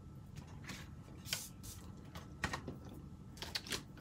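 Faint, scattered rustles and light taps of cardstock pieces being handled and set down on a wooden tabletop, with a small cluster of taps near the end.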